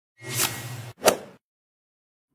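Logo-intro sound effect: a whoosh that swells over about half a second, then a sharp hit that dies away quickly.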